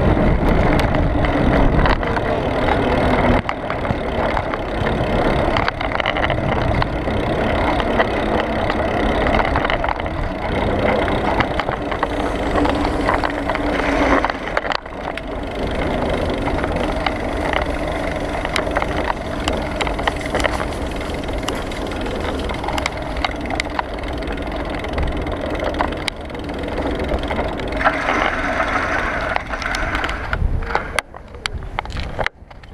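Bicycle riding noise picked up by a handlebar-mounted action camera: a steady rumble of tyres rolling over tarmac and block paving, with frequent small rattles and knocks from the bike and camera mount.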